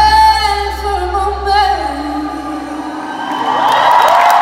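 The close of a live rock band's song: a voice holds a high, wavering note over a low sustained chord, and the chord fades out about three seconds in. Crowd cheering swells near the end.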